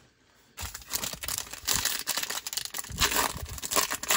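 Foil trading-card pack wrapper crinkling and crackling as it is handled and torn open, starting about half a second in.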